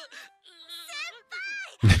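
A young female anime character's high-pitched voice whining in long, drawn-out tones that rise and fall, heard from the episode's soundtrack and quieter than the reactor's talk around it.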